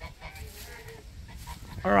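Faint, soft clucking calls from turkeys and chickens in a poultry yard. A woman's voice starts near the end.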